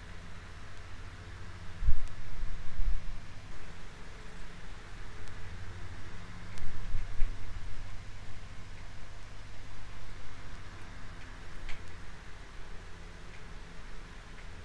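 Quiet workbench handling of small photo-etched brass parts with fine tweezers: a few faint ticks of metal on metal over a steady low hum. Soft low thumps come about two seconds in and again around seven seconds.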